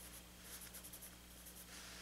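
Wooden pencil scratching faintly over sketchbook paper in short, irregular strokes.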